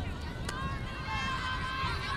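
Distant voices of players and people on the sideline calling out across an open field, with wind rumbling on the microphone and a single sharp click about half a second in.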